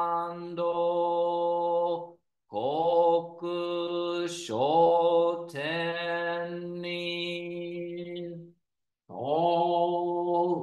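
A man chanting a Buddhist sutra alone, in Japanese, on long notes held at a steady pitch. He breaks off briefly for breath about two seconds in and again near the end.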